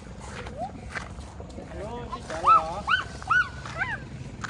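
A small child's short, high-pitched squeals, about five in quick succession in the second half, each rising and falling in pitch.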